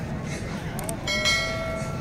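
Subscribe-button animation sound effect: a mouse click, then a single bright bell ding about a second in that rings on and fades.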